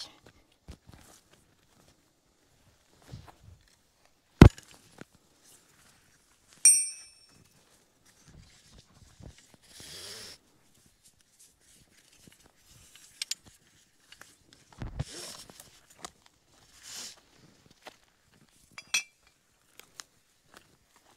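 Intermittent handling of ratchet straps and their metal hardware: a sharp knock about four seconds in, then brief ringing metal clinks of the strap hooks near seven seconds and again near the end, with soft rustles of webbing and footsteps in between.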